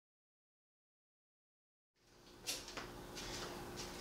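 Dead silence for about two seconds. Then faint garage room tone with a steady low hum, and a few sharp clicks and taps from handling the brass valve, rubber stopper and poly tubing.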